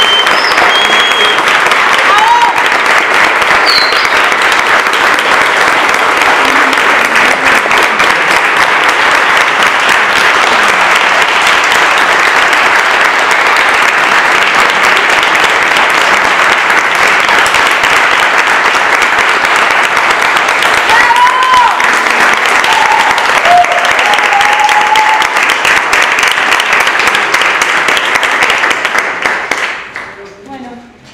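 An audience clapping loudly and steadily, with a few shouts and cheers near the start and again about twenty seconds in; the applause dies away at the very end.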